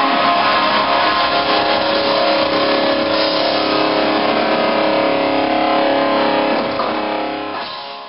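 Live rock band's electric guitar and bass holding a sustained, ringing chord through loud amplifiers, fading out near the end.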